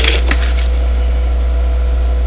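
Steady low electrical hum with a fainter steady tone above it, and a couple of short clicks near the start.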